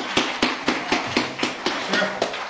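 Applause: hands clapping in an even rhythm of about four sharp claps a second.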